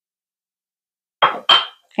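Silence, then a small measuring spoon clinks twice against a ceramic pinch pot, the second clink briefly ringing.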